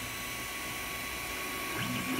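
Creality Ender 3 Pro 3D printer running as it lays its test strip: a steady whir from its always-on hot end fan, with a faint thin tone over it.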